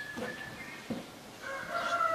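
A faint, drawn-out animal call, one long held note with several overtones, starts about one and a half seconds in, over a quiet room with a few soft clicks.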